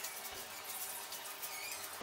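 Silicone spatula stirring a dry mix of salt, sugar and ground spices in a stainless steel bowl: a faint, gritty scraping and rustling.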